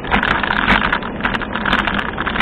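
Riding noise picked up by a bicycle-mounted camera: a rush of wind and tyre noise with frequent sharp rattling clicks as the mount shakes over the track surface.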